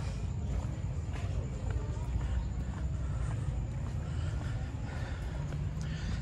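Street ambience on a phone carried while walking: a steady low rumble with faint distant traffic.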